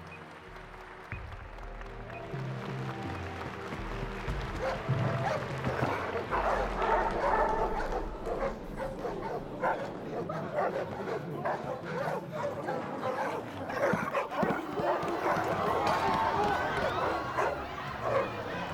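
Film soundtrack mix: low, tense music at first, then from about six seconds in a growing hubbub of many voices, with a dog barking.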